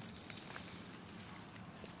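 Faint rustling of grass stems and soft clicks as a birch bolete is pulled from the ground by hand.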